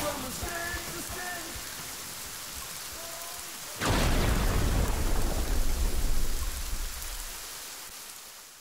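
Thunderstorm: steady rain, then about four seconds in a sudden loud thunderclap that rumbles on for a few seconds and fades away.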